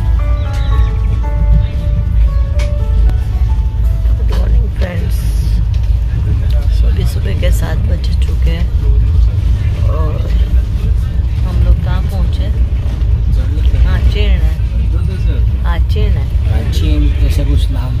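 Steady low rumble of a moving passenger train, heard from inside the coach, with indistinct voices of other passengers talking. Soft music carries on through the first few seconds.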